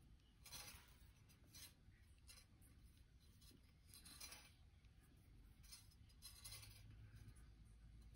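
Faint, brief rasps of thin copper weaving wire being pulled through and wrapped around thicker copper frame wires, about half a dozen at irregular moments.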